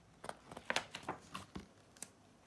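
A picture book's page being turned by hand: a few short, faint paper rustles and flaps.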